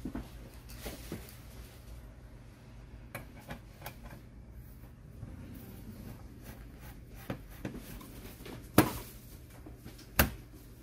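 Scattered light clicks and knocks of the sheet-metal frame of a Lenovo ThinkCentre Edge 91Z all-in-one PC being handled and seated during reassembly, with one sharper knock near the end.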